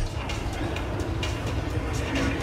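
Steady low rumble and hiss of gym background noise, with a few faint knocks.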